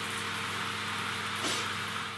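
Steady hiss of running shower water, with a faint crying sob about one and a half seconds in.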